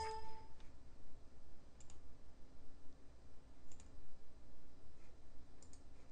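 A few faint, isolated clicks at a computer, about two seconds apart, over quiet room tone. A short ringing tone fades out in the first half second.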